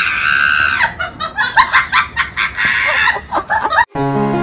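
House cat vocalizing: one drawn-out yowl for just under a second, then a quick run of short, chirping calls. A cut to piano music comes right at the end.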